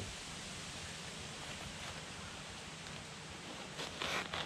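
Steady, faint outdoor background hiss. Near the end come a few soft rustles as hands reach into a fabric camera bag.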